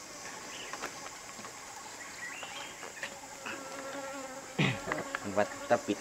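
Steady buzzing of a flying insect, its pitch wavering slightly, with a few short, louder knocks near the end.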